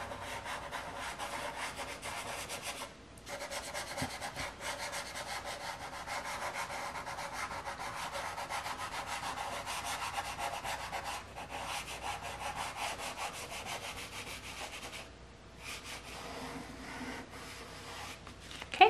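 Soft pastel stick scratching back and forth across paper in quick, rapid strokes as an area is coloured in, with brief pauses about three seconds in and again near the end.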